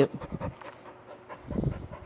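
Dog panting up close, with a few light clicks just at the start and a louder breathy puff near the end.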